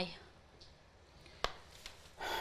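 Quiet room tone with one sharp click about a second and a half in and a fainter one shortly after.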